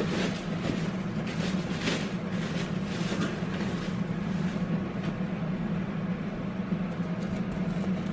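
A steady low hum throughout, with light rustling and a few soft clicks in the first half.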